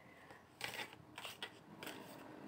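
Faint hand-shuffling of a deck of round tarot cards: the card edges slide and flick against each other in a few short rustling bursts.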